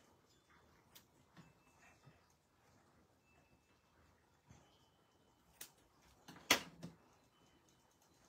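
Scissors snipping the tails of a sheer ribbon: a few faint short snips and clicks, the loudest about six and a half seconds in.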